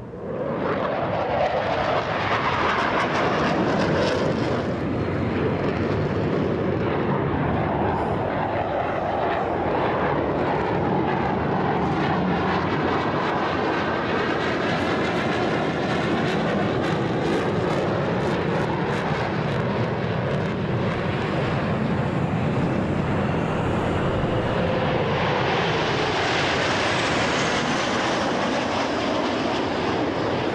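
Jet aircraft flying an aerobatic air-show display, its engine noise loud and continuous, with a sweeping whoosh that rises and falls as it passes about halfway through and swells again near the end.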